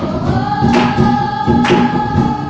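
A group singing to music with a steady beat about once a second, one long note held through most of it.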